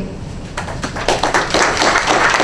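Audience clapping that starts about half a second in as a few scattered claps and quickly fills out into full applause.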